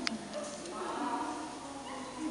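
A quiet, drawn-out voice sound that wavers slightly in pitch, with one sharp click at the very start.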